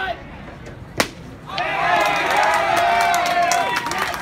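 A pitched baseball smacks into the catcher's mitt about a second in with one sharp pop. Spectators then cheer and yell together, one voice holding a long shout, for the strikeout.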